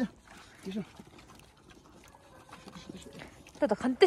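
A group of dogs and puppies eating from plates, with faint snuffling and chewing noises and a short low vocal sound about a second in. A man's voice starts near the end.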